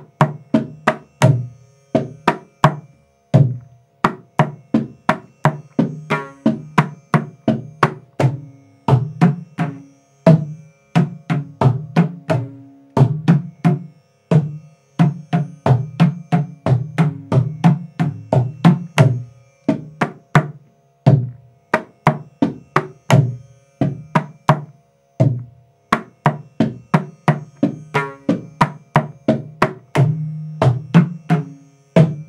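Mridangam playing a fast run of sharp strokes, about three to four a second, in repeated phrases with short breaks. Ringing pitched strokes on the right head mix with low, resonant strokes. It is the beginner's ninth-lesson stroke pattern (tom, thaka, ta, tum, kita, thaka) being played through.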